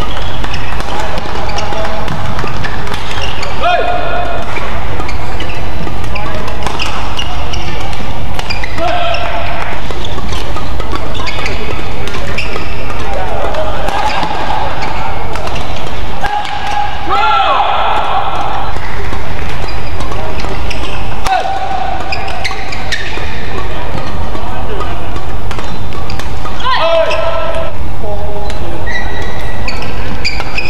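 Badminton rallies: sharp racket strikes on the shuttlecock and short squeals of court shoes. These come over a constant loud rumble of hall noise.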